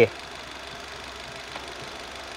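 Car engine idling steadily, a low even running sound with no distinct knocks or changes.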